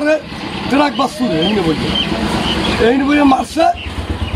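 A man's voice in short broken phrases over street traffic noise, with a motor vehicle passing in the middle and a few short high tones about half a second apart.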